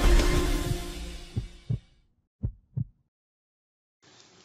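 Intro music fading out over about two seconds, then a heartbeat sound effect: two low double thumps.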